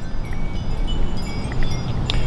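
Outdoor background with a steady low rumble and many faint, short, high-pitched pings scattered through it.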